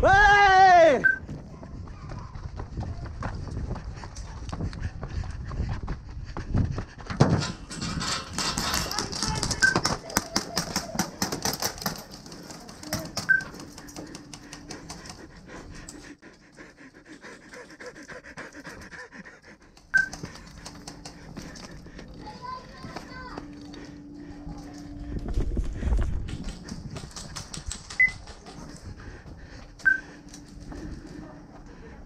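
An airsoft player breathes hard, catching his breath after holding it, with the clicks of airsoft guns firing in the distance.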